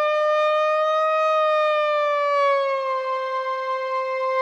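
Moog ONE polyphonic analog synthesizer sustaining a single note, its pitch bent slightly up and then gliding down to settle lower about two to three seconds in, worked with the pitch wheel.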